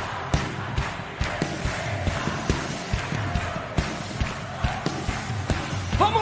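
Live worship band playing an instrumental passage between sung lines, with a steady drum beat of about two strokes a second.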